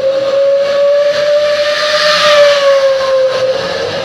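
A steady, steam-like whistle on one held note, rising slightly and dipping a little near the end, with a hiss that swells in the middle and eases off.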